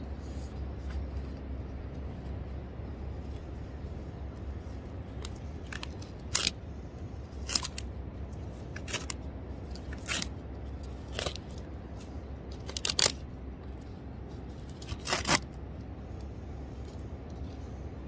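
Wet, sand-laden filter fabric being pulled open off a plastic dimple-board strip drain, giving a scattered series of short crackles and scrapes, about eight of them over the middle of the stretch.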